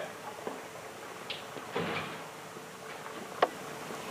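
Faint scattered knocks and rattles of a steel-tube aircraft fuselage frame being wheeled along, with one sharp click about three and a half seconds in.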